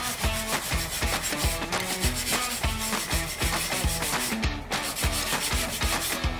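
Steel wire brush scrubbing the rusty hub face of a rear brake disc in quick back-and-forth strokes, with background music underneath.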